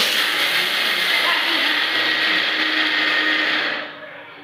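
Electric mixer grinder with a steel jar running in one short burst: a steady high whir that starts suddenly and winds down just before the end.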